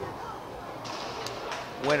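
A racquetball rally ending on a winning shot: a couple of faint, sharp knocks of the ball off racquet and court walls, about a second apart. A man's commentary voice begins near the end.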